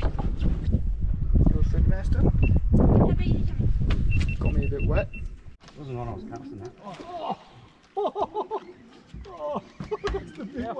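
Voices talking and calling out, with wind rumbling on the microphone for the first five seconds or so; about halfway through the sound changes abruptly to talk over a quieter background.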